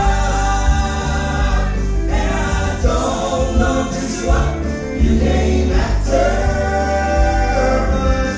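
Male southern gospel trio singing in three-part harmony into microphones, with long held notes, over instrumental accompaniment with a strong bass.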